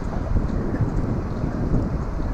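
Steady low rumble of diesel train engines, with wind buffeting the microphone.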